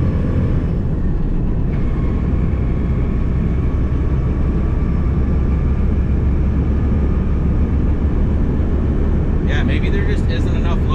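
Mack semi-truck's diesel engine and road noise heard from inside the cab while driving, a steady low rumble with a faint steady whine above it; the turbo has a newly replaced actuator and is making boost. Near the end a man's voice begins.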